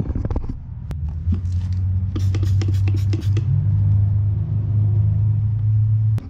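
A loud steady low rumble runs through most of the clip. Over it, a quick run of short sharp sounds about two to three seconds in, fitting spritzes of instant detailer and a microfiber towel rubbing over a polished chrome wheel lip.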